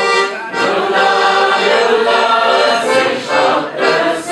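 Hohner Student piano accordion playing a folk-style tune, with voices singing along.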